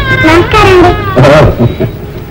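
Meow-like cries, about three in a row, each sliding up and down in pitch; the loudest comes just past a second in.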